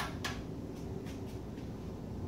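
A light switch clicked off: a sharp click, a second click about a quarter second later, then a few faint ticks over a steady low hum.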